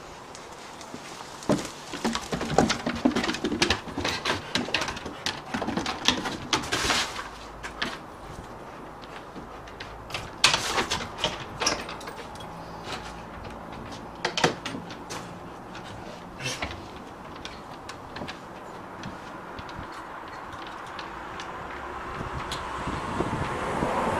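Scattered knocks and metal clicks from a padlock and latch being worked on a wooden shed door, then the wooden door swinging open near the end.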